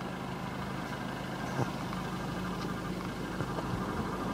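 Volkswagen Golf TDI diesel engine idling steadily, heard through the open driver's door, with one light click about a second and a half in.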